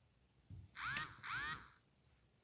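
A metal spoon scraping and squeaking against the rind of a watermelon half, two short strokes about half a second apart.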